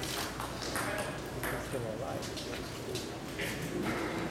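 Table tennis rally: the celluloid ball clicking sharply off the paddles and the table in an irregular series of hits, with voices in the hall behind.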